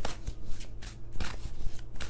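A deck of tarot cards being shuffled by hand: a quick, uneven run of flicking and slapping card sounds.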